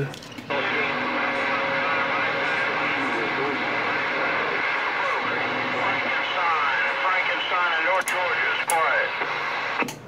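A Galaxy CB base radio's speaker carrying a weak received signal: steady static hiss with faint, garbled voices and wavering tones buried in it. It comes in about half a second in, has a couple of sharp clicks near the end, and cuts off suddenly just before the end.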